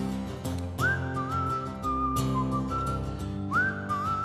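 A man whistling a melody into the microphone over a strummed acoustic guitar. Each whistled phrase starts with a quick upward slide, about a second in and again near the end.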